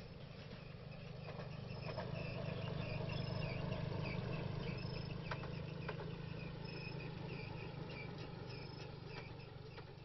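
Outdoor ambience of insects chirping in short repeated calls over a steady low hum, with a few faint clicks. It swells up over the first few seconds and fades out toward the end.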